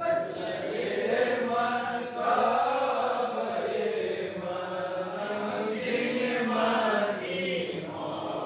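A group of men chanting together in a devotional recitation: slow, drawn-out melodic lines that rise and fall without pause.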